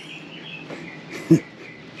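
Small birds chirping intermittently over a steady background hum, with one brief voiced sound about a second and a half in.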